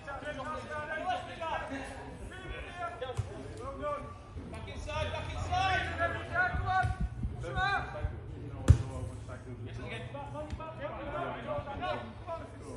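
Players' voices calling out across a football pitch, with a few ball kicks; one sharp kick of the football about two-thirds of the way through is the loudest sound.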